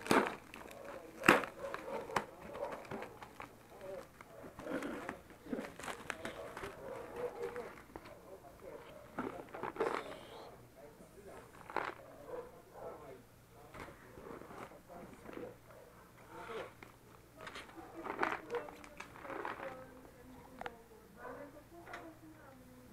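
Plastic packaging rustling and crinkling as foam and foil wrap are pulled off a plastic candy jar and the jar is handled, with irregular knocks and clicks. The sharpest knock comes about a second in.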